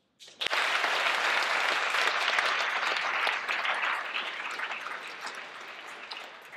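Audience applauding. It breaks out suddenly about half a second in, holds steady, then slowly dies down toward the end.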